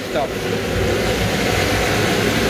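Steam boiler burner running: a steady, even rushing noise from its blower and flame.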